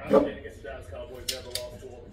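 A man's voice, with two sharp clicks a little past halfway.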